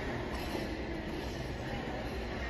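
Steady low rumble and hiss of an ice rink's background noise, with no distinct events.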